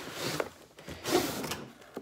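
Cardboard scraping and sliding as a plain inner box is pulled out of a printed cardboard box sleeve, in two bouts about a second apart with a small knock between them.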